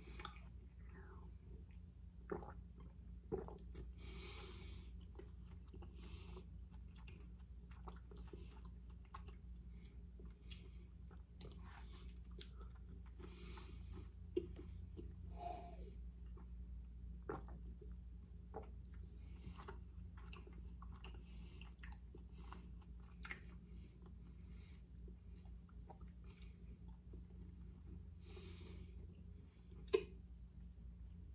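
Faint close-up mouth sounds of a person drinking from a can: scattered small swallowing clicks and short breaths through the nose, over a steady low hum.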